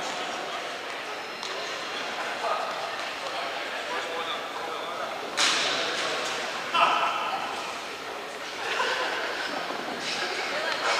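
Indistinct chatter of several people echoing in a large sports hall, with a sharp knock about five and a half seconds in and a voice raised just before seven seconds.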